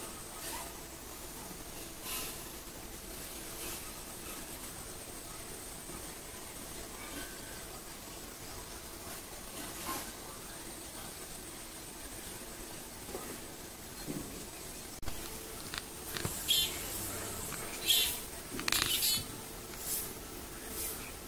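Black drongo giving short, high calls: a lone call about two seconds in, another around ten seconds, then a quick cluster of louder calls in the last four seconds, over a faint steady outdoor background.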